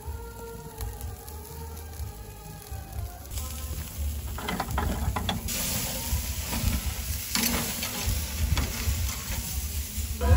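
T-bone steaks sizzling on a charcoal grill. The sizzle grows louder from about three seconds in as flames flare up under the meat, with a few short clicks of metal tongs on the grate. Faint music is heard underneath at the start.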